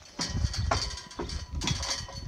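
A few short knocks and rattles from the steel frame and hanging chain of a cattle oiler trailer as it is tipped down, over a low, uneven rumble of wind on the microphone.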